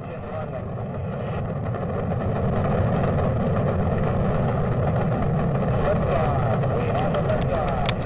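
Saturn V rocket liftoff: a deep, steady engine roar that builds in loudness over the first couple of seconds and then holds, with sharp crackling pops near the end.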